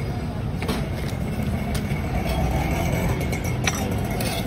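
Steady low rumble of street traffic, with a few faint clicks.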